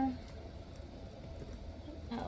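Faint small crinkles and ticks of protective plastic wrap being worked off a leather handbag's metal hardware, over a steady low room hum, just after a sung 'ah' trails off.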